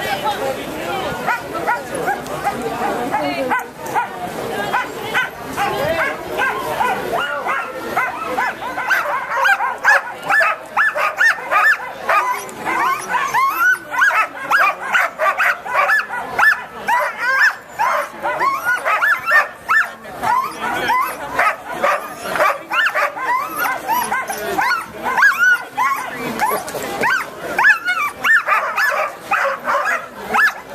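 Many harnessed sled dogs barking and yipping together in a dense, overlapping chorus of short rising-and-falling calls.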